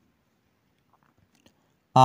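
Near silence: room tone with a few faint small ticks about a second in.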